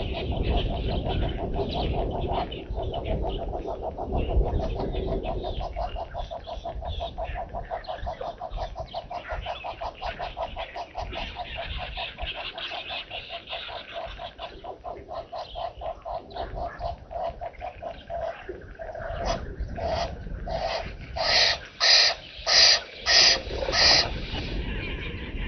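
Wild animal calls: a long run of fast, even, pulsed calls at one pitch, then near the end about five loud, harsh calls at roughly two a second.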